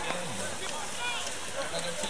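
Race spectators' voices in a noisy outdoor crowd, with scattered shouts of encouragement and a short raised call about a second in.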